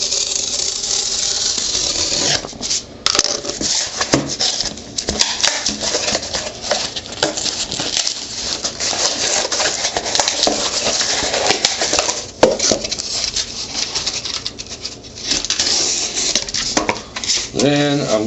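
Utility knife cutting through corrugated cardboard on a tabletop: a long, rasping scrape in several long strokes with brief pauses between them.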